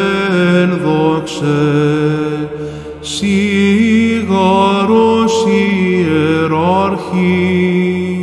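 Solo male Byzantine chant of an apolytikion, here in a long melismatic stretch of held, ornamented notes over a steady low drone (ison). Short breaths come between phrases, one about three seconds in, where the drone shifts pitch.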